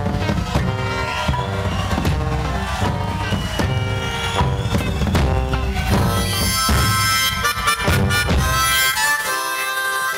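Band music with bass and drums. About nine seconds in, the bass and drums drop away, leaving an amplified blues harmonica playing sustained reedy notes.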